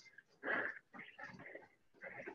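A runner breathing hard in the middle of a treadmill sprint interval: one strong breath about half a second in, then fainter, quicker breaths.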